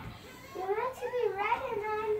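A young child's high, wordless, sing-song voice wavering up and down in pitch, starting about half a second in.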